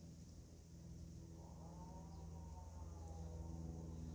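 A faint, steady low hum, with a faint whine about a second in that rises slowly and then falls away over the next two seconds.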